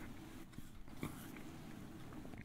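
Faint room tone at a studio microphone, with a few soft clicks.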